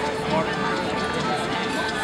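Restaurant dining-room hubbub: many diners talking at once, a steady mass of overlapping voices with no single speaker standing out.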